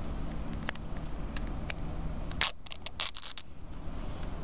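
Clear plastic packaging clicking and crinkling as a pull tab is peeled and the plastic tray is handled, with a short burst of crackling about two and a half seconds in.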